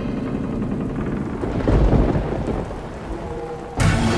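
Steady rain with a deep roll of thunder that swells to its loudest about two seconds in and fades, then a sudden loud hit just before the end.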